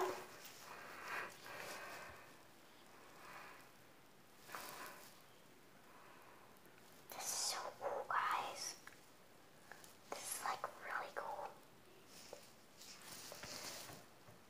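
Quiet whispering in a few short, scattered phrases.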